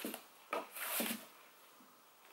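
Satin ribbon sliding off a cardboard gift box as the box is handled: a soft rustle lasting about half a second, starting about half a second in.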